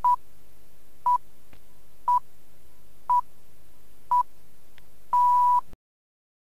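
BBC Greenwich Time Signal: five short 1 kHz pips a second apart, then a longer sixth pip marking the exact start of the minute, over a faint hum. The recording cuts off just after the last pip.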